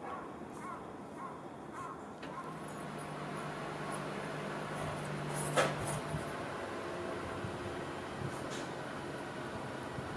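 Distant electric commuter train approaching, heard as a low steady hum. A sharp knock a little past halfway is the loudest moment. In the first couple of seconds a faint short call repeats about every half second.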